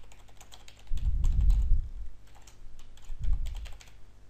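Computer keyboard typing: a quick, irregular run of key clicks as a short line of text is entered, with two brief low rumbles, about a second in and near the end.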